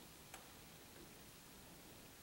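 Near silence: hall room tone, with one faint click about a third of a second in.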